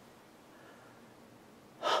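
Faint room tone, then near the end a man's short, sharp intake of breath, a gasp.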